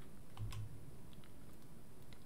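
A quiet pause of room tone with a low hum and a few faint, scattered clicks.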